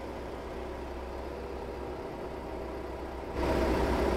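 Street sweeper's engine idling with a steady low hum. About three and a half seconds in, it grows louder and a hiss joins it.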